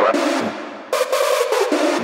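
Hard techno track in a short break: the kick drum and bass drop out, leaving a synth sound that thins and fades away, then cuts back in sharply about a second in.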